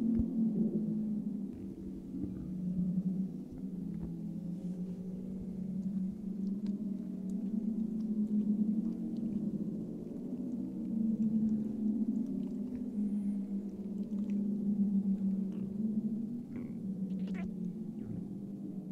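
A low sustained drone that wavers slightly in pitch and gently swells and fades, with a few faint clicks over it.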